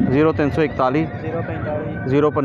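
A horse whinnying, heard together with a man talking.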